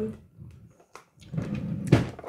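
A short stretch of low rustling noise ending in a single sharp thump near the end, after a few faint clicks.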